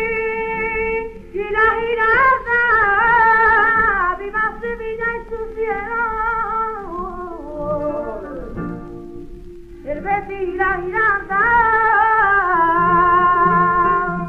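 A female flamenco singer sings long, wavering, ornamented phrases over Spanish guitar accompaniment, heard from an old 1930 shellac record. The voice falls away briefly just past the middle, then a new phrase begins.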